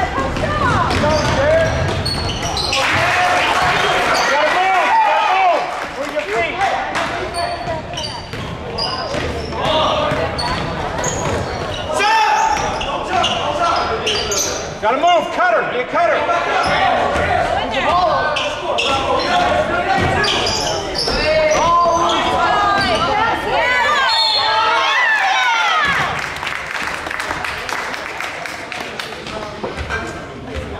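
Indoor basketball game on a hardwood gym floor: the ball bouncing and dribbling, sneakers squeaking, and voices calling out, all echoing in the hall. It quietens somewhat near the end as play stops for free throws.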